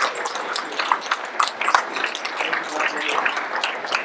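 Audience applauding: many hands clapping irregularly, with some voices mixed in.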